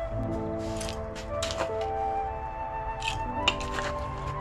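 Calm background music with held tones, over which come a few short gritty rustles of potting soil being poured and worked into a bonsai pot.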